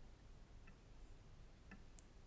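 Near silence: room tone, with two faint short clicks, one near the middle and one near the end.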